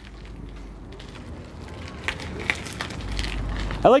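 Mountain bike being ridden over rough concrete: the tyres roll with a steady noise and there are a few light rattling clicks about halfway through. A low rumble grows louder near the end.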